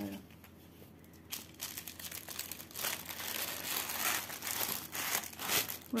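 Clear plastic packaging bag crinkling and rustling as hands handle it. It starts about a second in, grows louder in the middle and keeps going to the end.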